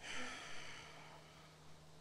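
A woman's breathy exhale held in a deep stretch, a soft rush of air that swells just after the start and fades away over about a second.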